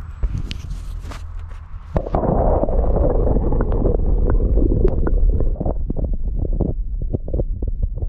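Muffled underwater rumbling and sloshing picked up by a camera pushed below a pond's surface, with many small knocks and clicks from the camera housing being handled. It gets louder about two seconds in as the camera goes under.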